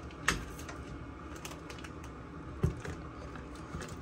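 Light clicks and crinkling of a plastic bag as whole spices are handled, with a sharp click about a third of a second in and a louder knock a little past halfway.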